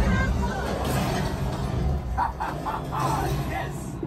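Simulator ride soundtrack: music over a deep rumble, with voices coming in a little past two seconds.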